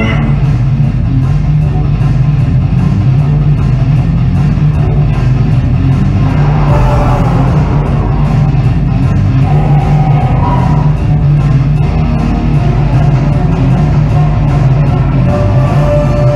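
Music from a live stage musical's orchestra playing steadily and loudly, with a strong low end and no clear singing.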